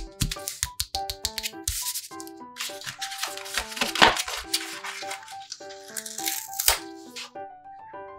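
Light background music with a stepping melody, over paper cutouts being handled: short taps near the start, then a rustling of stiff paper that is loudest about four seconds in.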